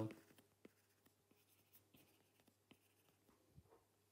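Near silence with faint, irregular ticks of a stylus tapping and sliding on a tablet screen during handwriting.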